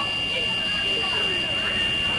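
Interior noise of a running school bus: low engine and road noise under a steady high-pitched tone, with faint children's voices.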